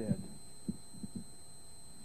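A pause in a man's speech, just after the end of a word: a steady low hum with a faint steady high-pitched tone over it, and three or four soft low thumps a little under a second in.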